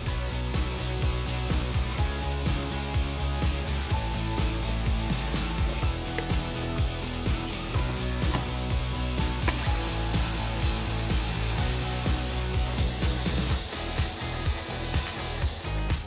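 A bamix hand blender driving its processor attachment's blade, grinding a mix of dry whole spices that clatter and rattle against the bowl, with a louder, hissier stretch of grinding in the middle. Background music plays underneath.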